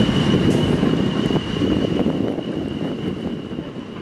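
A steady low rumble with a thin, steady high whine above it, dying away toward the end.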